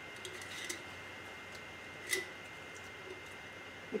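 Faint clicks and taps of a glass canning jar and its plastic grow insert being handled and taken apart, the loudest click about two seconds in, over steady faint room tone.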